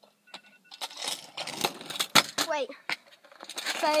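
Kick scooter clattering on hard ground during a failed trick attempt: a run of metallic rattles and clacks, with one sharp clack about two seconds in.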